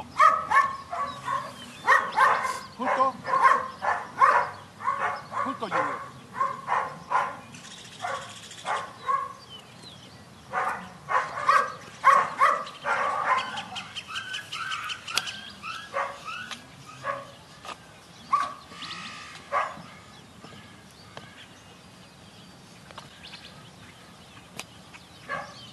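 Dog barking repeatedly, about two to three barks a second, thinning out after about thirteen seconds and stopping about twenty seconds in.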